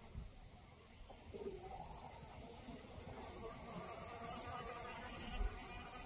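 Honeybees buzzing close by: a steady pitched hum that starts about a second and a half in and grows louder.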